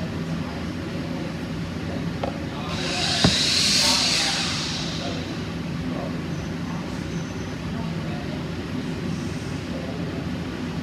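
Steady woodshop room noise with a low mechanical hum and background voices; about three seconds in a rushing hiss swells and fades over two seconds, with a sharp click near its start.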